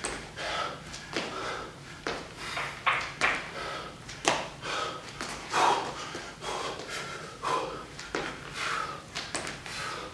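A man breathing hard and fast while exercising, in short noisy breaths at roughly one to two a second.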